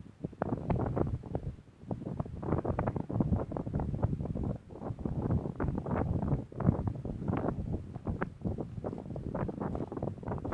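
Wind buffeting the camera's microphone, an uneven rumble that gusts up and down.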